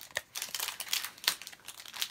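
Pokémon trading cards being handled and shuffled through by hand: a scattered run of short, crisp clicks and rustles of card stock.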